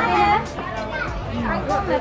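People talking, with background music.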